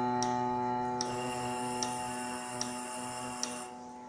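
A trombone mouthpiece is buzzed on one long held note that slowly fades and stops shortly before the end. Under it a metronome ticks evenly, about once every 0.8 seconds.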